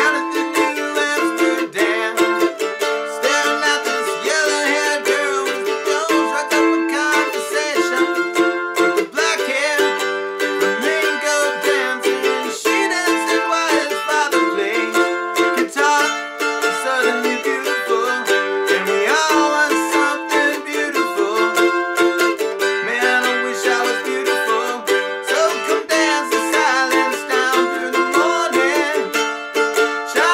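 F-style mandolin strumming chords in a steady down-up rhythm, moving through an A minor–F–D minor–G progression.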